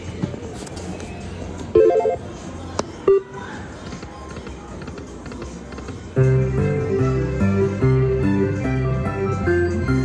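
Slot machine sounds on a casino floor: a few short electronic chimes, then about six seconds in a loud electronic slot-machine tune of quick repeating notes starts up and keeps going.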